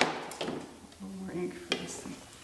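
Knocks and clicks of hand printmaking tools on a tabletop as a rubber brayer is set down and a palette knife picked up. The loudest knock comes right at the start, with lighter clicks after it and one more near the end.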